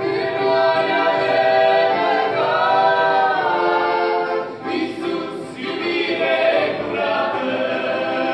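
A small mixed group of men and women singing a Christian hymn together in harmony, with long held notes.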